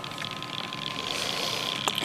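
Bedini-Cole window motor starting up and spinning up its heavy magnet wheel of about 35 to 40 pounds: a high, rapid whirring tick that grows slowly louder as it accelerates, with a short click near the end.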